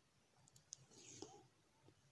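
Near silence with a few faint clicks and a soft rustle about half a second to a second and a half in: black embroidery thread being drawn through cloth by hand.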